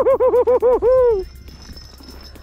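A man laughing in a rapid run of about eight short high-pitched "ha"s, like a whinny, ending in a longer falling note a little over a second in.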